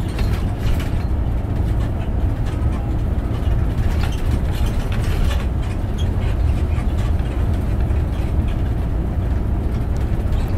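Steady low rumble of a 40-seat coach bus's engine and tyres, heard from inside the cabin as it drives along at an even speed.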